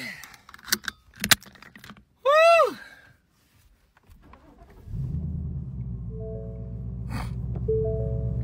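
A couple of light clicks, then a loud 'Woo!'. About five seconds in, a Ford Mustang's engine starts and settles into a steady low idle, with a few held musical notes sounding over it.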